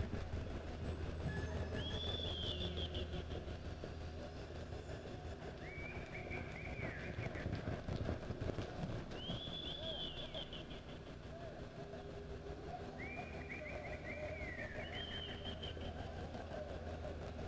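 A bird calling repeatedly, a short chirped phrase that rises and falls, coming about every three to four seconds over a steady low hum.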